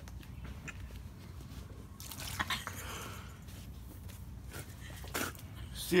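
Milk poured onto a sleeping person, splashing over skin and clothing for about a second and a half starting about two seconds in. There are a few short knocks and soft handling sounds.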